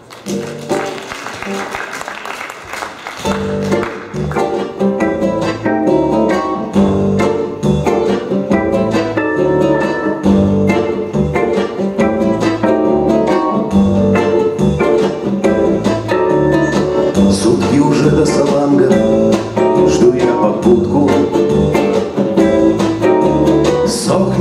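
Acoustic guitar and accordion playing the instrumental introduction to a song, lighter at first and growing fuller about three seconds in.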